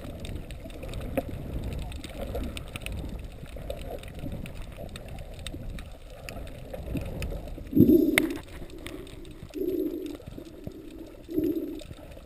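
Underwater sound through a GoPro housing: a low, steady rush of water with scattered small clicks and gurgles as the diver moves. About eight seconds in, a muffled "ooh" from the diver into his snorkel, then three short, muffled hums.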